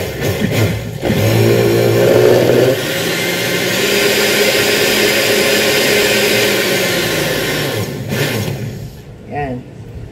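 Hanabishi Super Blender motor starting about a second in, running steadily as it blends the kiwi-and-milk juice, then switched off and winding down near the end.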